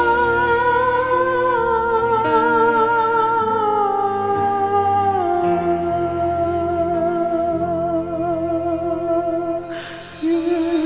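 Karaoke vocal holding long wordless notes with vibrato, stepping down in pitch over the first five seconds and then held low, over a backing track.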